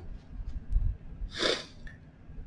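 A man's single short, sharp breath noise through the nose or mouth, about one and a half seconds in.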